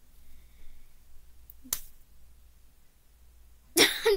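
A single sharp click a little before halfway through, over a low room hum, then a girl starts talking just before the end.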